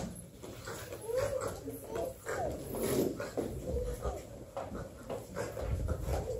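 Young performers' voices making short, sliding whimpering and animal-like cries, several in a row.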